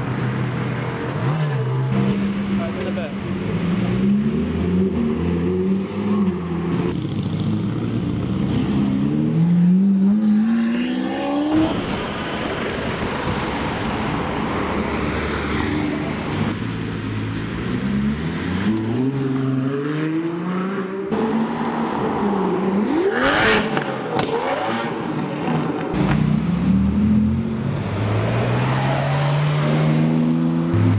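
Sports car engines accelerating away one after another, each rising in pitch through the revs with drops at the gear changes; the cars include a Ferrari 430 Scuderia and Porsche 911s. A single sharp crack about two-thirds of the way through.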